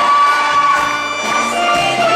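Live band music with a male and female vocal duet over percussion, a long note held for the first second.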